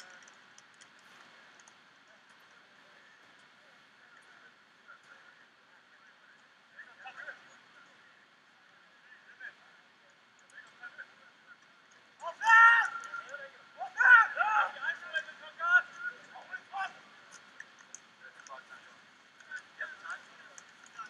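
Voices shouting, heard thin and narrow-band: faint calls at first, then a loud shout about twelve seconds in followed by a run of shorter calls.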